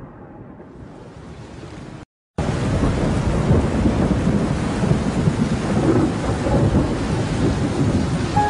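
Thunderstorm: a low rumble of thunder with rain, a brief cut to silence about two seconds in, then loud steady rain.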